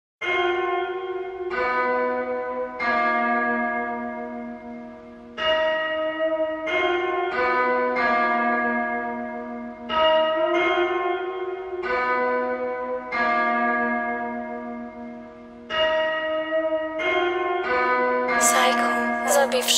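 Bell tones struck one at a time in a slow melody, each ringing out and fading before the next, the phrase repeating about every five seconds: the intro of a rap track before the beat comes in.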